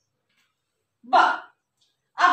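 Only speech: a woman says a single syllable, "baa", about a second in, with near silence before and after it.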